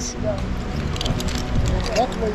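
Shallow seawater sloshing around the feet while wading, with a couple of faint clicks near the middle.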